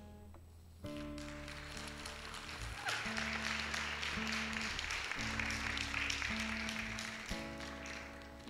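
Church band playing soft, slow held chords under a congregation applauding; the chords start just under a second in and change every second or so, and the clapping joins about three seconds in and fades near the end.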